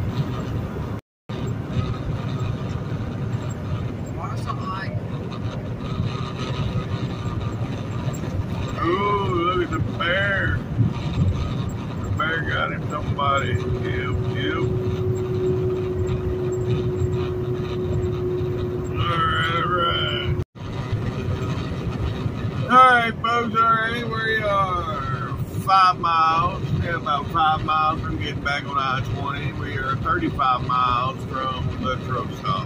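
Semi-truck cab at highway speed: a steady low rumble of engine and road noise, with a voice heard at times over it, more often in the last third. The sound cuts out completely for a moment twice, about a second in and again about two-thirds of the way through.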